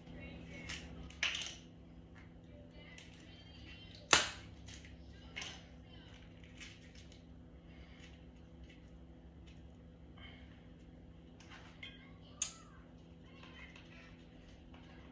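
Small clicks and taps from a glass spice jar being opened and handled with measuring spoons, the sharpest click about four seconds in and another near the end, over a faint steady hum.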